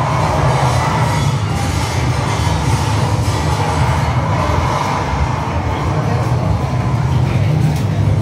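Earthquake simulator recreating the 1995 Kobe earthquake: a loud, steady low rumble.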